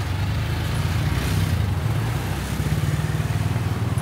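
A motor vehicle engine running close to the microphone: a steady low rumble with street noise around it.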